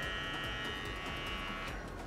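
Wahl Mini Arco cordless trimmer running, a quiet, steady high-pitched whine that stops near the end.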